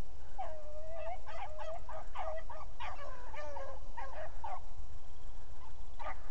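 A pack of beagles baying as they run a rabbit's track, a string of overlapping hound calls from about half a second in until about four and a half seconds in.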